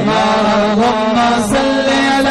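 A male singer's voice holds a long wordless note into a microphone in unaccompanied devotional chant style. The note is steady at first, then steps up in pitch about a second and a half in.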